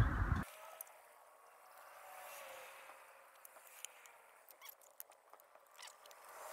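Faint, scattered small clicks and handling noises of metal scooter parts being worked by hand, over a low hiss, with the clicks coming more often in the second half.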